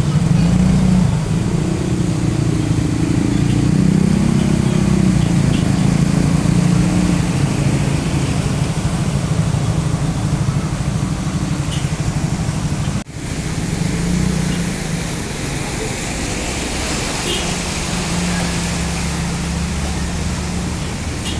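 Motor scooters and a car driving through a flooded street: their engines run while water splashes and washes around the wheels, a steady mix of engine noise and rushing water.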